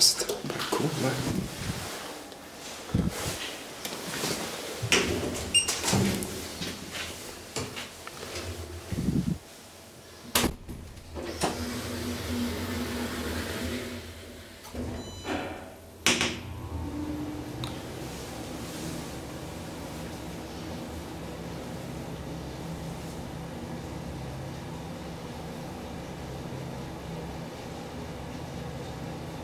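Old KONE-modernised elevator in use: clunks and knocks of the manual swing landing door being opened and shut, a louder bang about ten seconds in, then a rushing sound as the sliding car doors close. About sixteen seconds in there is a click, and the car sets off with a steady motor hum.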